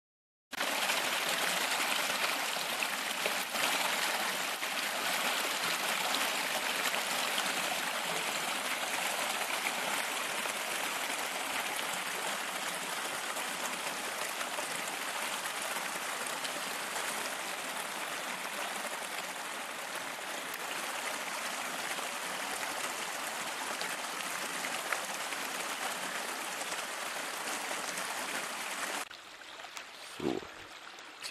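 Small woodland brook trickling and splashing over a little drop between stones: a steady rush of running water. It starts abruptly about half a second in and falls away just before the end.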